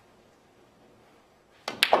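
Hushed room tone, then about one and a half seconds in a snooker shot is played: a light tap of the cue tip on the cue ball, followed a moment later by a louder, sharp click of the cue ball striking an object ball.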